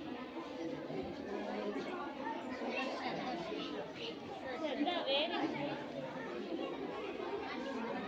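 Many children's voices chattering at once in a large hall, with one voice standing out a little louder about five seconds in.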